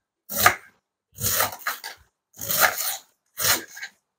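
Kitchen knife slicing through a head of green cabbage into small pieces: four separate cuts, each about half a second long.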